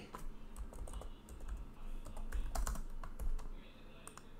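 Computer keyboard keystrokes: light clicks at irregular spacing, made while editing an equation.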